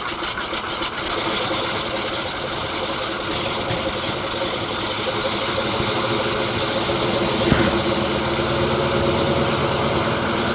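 The de Havilland Canada DHC-2 Beaver's nine-cylinder Pratt & Whitney R-985 radial engine just after starting: a quick run of uneven firing strokes as it catches, then settling into a steady run that grows slightly louder. There is one brief knock about seven and a half seconds in.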